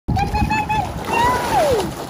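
Water splashing as a Great Dane in a life jacket paddles through a swimming pool. Over it come high, drawn-out vocal sounds, the last one sliding down in pitch.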